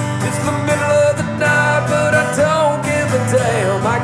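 Live acoustic country song: a strummed acoustic guitar under a man singing, his held, wavering sung notes running between lines.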